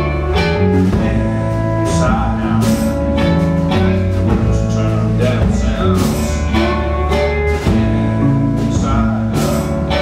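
Live band playing an instrumental passage: strummed acoustic guitar, electric bass and drum kit, with snare and cymbal hits on a steady beat.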